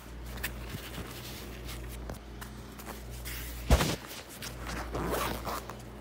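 Zipper on a fabric iPad case being drawn closed in a long continuous pull, with one sharp knock a little past halfway.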